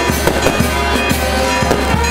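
Firecrackers going off in quick, irregular pops and bangs, several a second, over a brass band playing.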